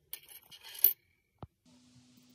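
Small metal earring blanks clinking against each other: a quick run of light metallic clinks over about a second, the loudest at the end, then a single click.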